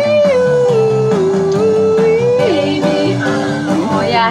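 Song music with a guitar accompaniment and a long held melody note that steps down in pitch twice.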